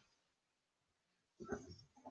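Near silence: room tone, broken by one brief faint sound about a second and a half in.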